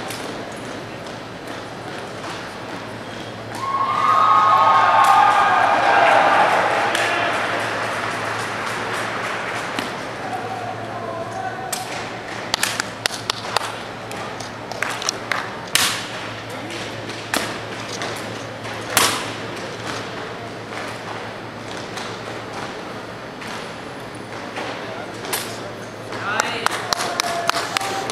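Spectators shouting and cheering for a few seconds, starting about four seconds in. Then a long run of sharp clacks and slaps from a drill rifle being spun, caught and struck during a solo exhibition drill routine, the loudest near the middle.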